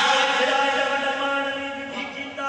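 Men's voices chanting a devotional qasida through a loudspeaker system, holding one long note that slowly fades.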